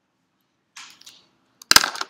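A brief soft rustle, then a single loud, sharp crack or knock close to the microphone near the end.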